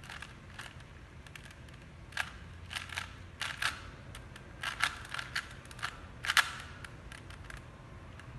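A Rubik's cube being turned by hand: irregular quick plastic clicks and clacks as its layers rotate, coming in short runs, the loudest a little past six seconds in.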